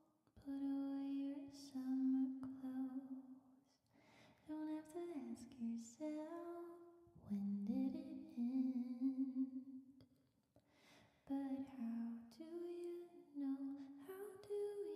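A woman singing softly and close to the microphone, without accompaniment, in long held notes that slide between pitches. Pauses fall about four seconds in and again about ten seconds in.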